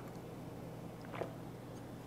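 Mostly quiet with a steady low room hum, and one faint gulp about a second in as makgeolli is swallowed from a small glass.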